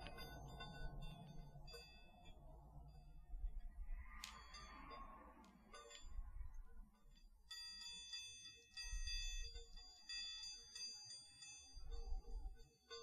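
Chinese baoding balls handled close to the microphone. Their internal chimes ring in soft, high, bell-like tones with light clicks as the balls knock together. The ringing is sparse at first and becomes fuller and continuous about halfway through.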